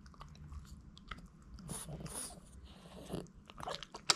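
A Boston terrier biting and chewing a hard duck-bone dog treat held in a hand, making soft, irregular crunches and mouth clicks. A few are louder around the middle and just before the end.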